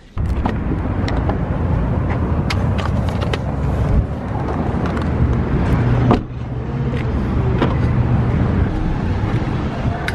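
Car and traffic noise outdoors, a dense low rumble with scattered clicks and knocks, broken by abrupt cuts about four and six seconds in.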